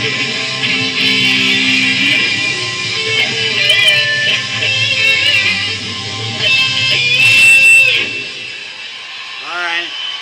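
Electric guitar playing a lead line with bent notes, ending on a long held bent note about seven seconds in that dies away by about eight seconds. A man's voice starts near the end.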